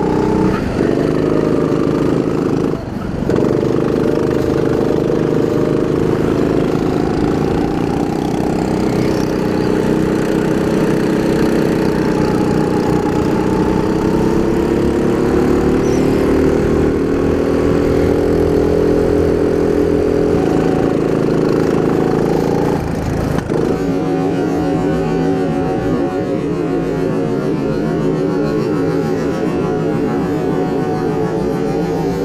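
Racing kart's engine running at high revs, recorded on board, its pitch slowly rising and falling with the speed through the corners. It dips briefly about three seconds in, and near the end the note drops lower and sounds rougher.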